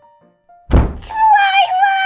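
A door slammed shut with a heavy thud about two-thirds of a second in, followed by a high-pitched shout of "Twilight!", drawn out long.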